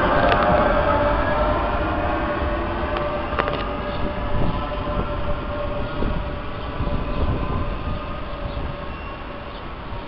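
Renfe regional electric multiple unit pulling away and receding, its electric traction whine slowly dropping in pitch and fading, with a few faint clicks from the wheels on the rails.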